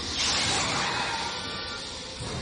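Background music from an animated series' soundtrack, with a hissing sound effect that fades over about a second and a half.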